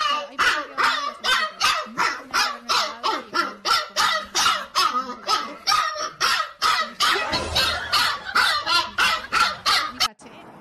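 Husky puppy barking over and over without a pause, about three barks a second.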